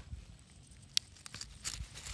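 A black radish being pulled out of garden soil. There is one sharp snap about halfway through, then a second of short rustling and tearing as the roots and soil give way.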